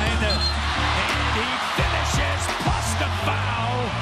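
Background music with a steady bass line over basketball arena crowd noise, which swells in the first two seconds.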